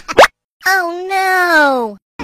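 Cartoon sound effects: a quick rising pop, then a voice-like call that slides down in pitch for over a second and cuts off.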